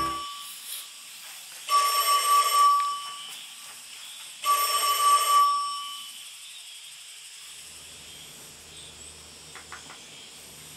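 Telephone ringing: the tail of one ring at the start, then two more rings of about a second each, about three seconds apart, each a steady electronic tone with a bright, high edge. It is an incoming order call.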